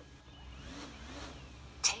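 DJI Phantom 4 quadcopter's brushless motors starting and its propellers spinning up, a whine that rises in pitch and then levels off.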